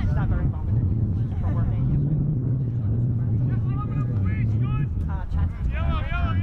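Several short, high-pitched shouts and calls from voices across a youth lacrosse field, over a steady low rumble.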